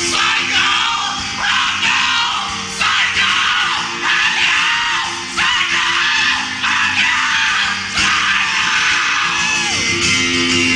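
Live solo performance: an acoustic guitar strummed under a man singing in loud, shouted vocal phrases that repeat about every second, many falling off in pitch at the end.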